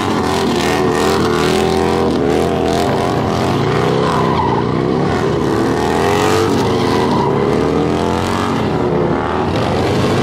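Motorcycles doing burnouts: engines held at high revs, the pitch rising and falling as the throttle is worked, with the rear tyres spinning against the asphalt.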